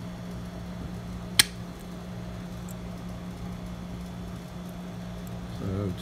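Lishi handheld key cutter giving a single sharp metallic click about a second and a half in, as its punch nicks a shallow cut into a nickel silver filing cabinet key. A steady low hum runs underneath.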